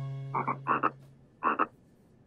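Cartoon frog croaking in three short bursts within about a second and a half, the last two each a quick double croak. A held music note fades out under the first croaks.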